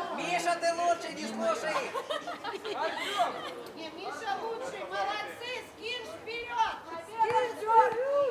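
Several people talking and calling out at once: overlapping voices of spectators and players, with no single clear speaker.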